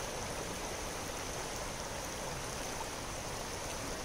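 Shallow, rocky creek flowing: a steady rush of water over stones.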